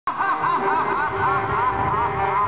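A man laughing loudly and rapidly through a stage PA, a string of 'ha' sounds each rising and falling in pitch, about four to five a second, over a steady held background tone.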